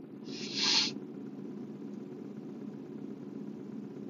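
A short breathy exhale in the first second, then a steady low hum inside a car.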